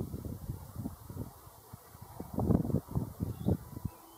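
Wind buffeting the microphone in irregular low rumbles, strongest a little past halfway.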